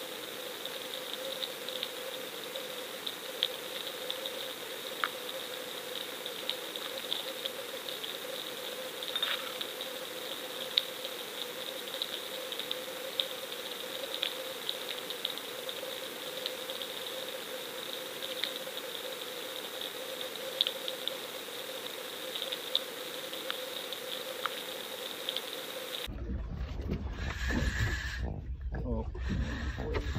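Underwater sound picked up by a submerged GoFish Cam: a steady hum and hiss with scattered faint clicks. Near the end it cuts abruptly to a low rumble, wind or engine, on the boat deck.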